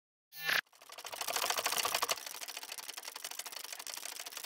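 Sound effect of an animated logo intro: a brief swish, then a rapid run of mechanical-sounding clicks, loudest for the first second or so and softer after, with a faint steady hum beneath in the second half.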